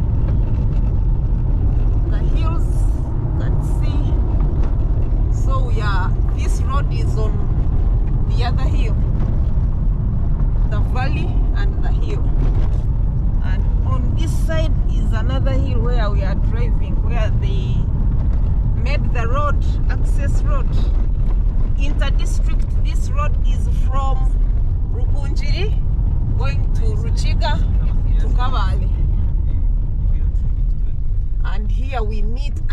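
Car driving on a rough dirt road, heard from inside the cabin: a steady low rumble of engine and tyres, with scattered rattles and clicks from the uneven surface.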